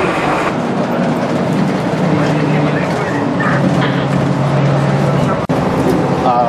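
City bus running, its engine and road noise droning steadily, with a man's voice over it. The sound breaks off for an instant near the end.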